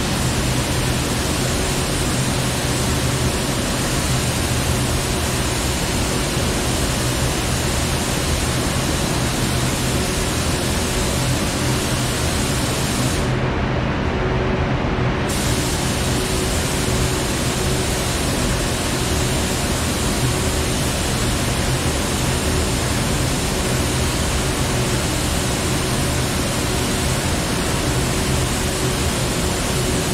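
Paint spray gun hissing with compressed air as a candy coat is sprayed onto a body panel, over the continuous low rush of the spray booth's ventilation fans.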